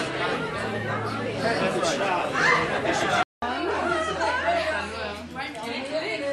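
Indistinct chatter of several people talking over one another. It drops out for a split second a little over three seconds in.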